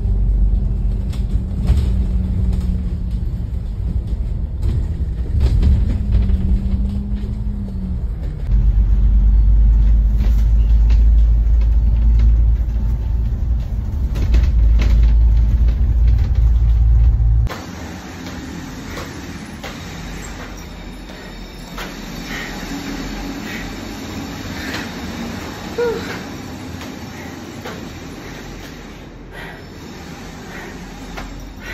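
Loud low rumble of a moving double-decker bus heard from inside, its engine note briefly rising and falling. A little over halfway it cuts off suddenly to a much quieter background with faint scattered clatter.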